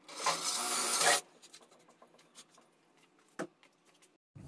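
Power drill boring into the wooden drawer side for about a second, then stopping. Light clicks and one sharp knock follow, the knock about three and a half seconds in.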